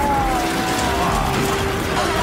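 Music with long held notes over a steady noisy background.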